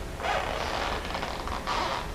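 Soft creaking as a man steps across a stage floor to a music stand, with no speech.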